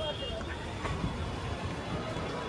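Outdoor ambience: faint background voices over a steady low rumble of distant traffic.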